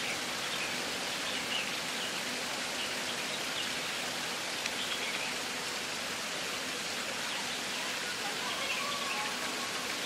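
Steady hiss of running water, with faint bird chirps scattered through.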